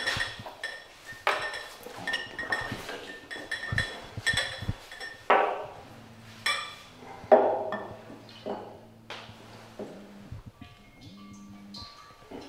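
Glassware clinking and knocking: a glass wine thief and a wine glass tapping against each other and the barrel as they are handled, a dozen or so sharp clinks, several ringing briefly.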